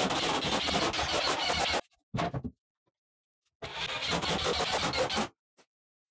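Power driver driving screws into a plywood shelf top, in three runs with a fast rattle: a long one, a brief one just after two seconds, and another from about three and a half to five seconds.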